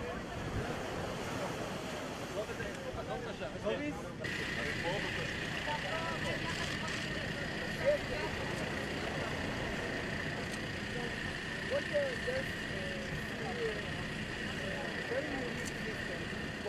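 Wind and surf noise, then, after a cut about four seconds in, a steady high-pitched whine from the running truck-mounted GAL-Mobile water filtration unit, with a crowd of voices chattering around it.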